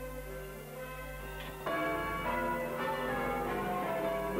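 Church bells ringing changes, a run of overlapping bell strokes that steps up in loudness about one and a half seconds in.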